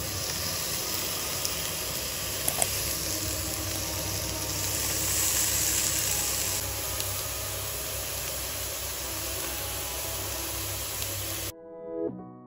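Raw chicken breast pieces sizzling in a hot frying pan as they are laid in with tongs: a steady hiss that swells around five seconds in. It cuts off shortly before the end, giving way to piano music.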